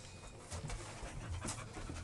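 English springer spaniel puppies panting and scuffling as they wrestle, with scattered small clicks and rustles.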